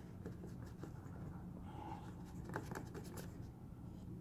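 Wooden craft stick stirring resin mixed with gold paint in a paper cup: faint scraping and light taps against the cup wall, over a low steady hum. The mixture has gone thick with the added paint.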